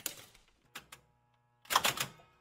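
A few sharp clicks and knocks, with a louder cluster of them near the end.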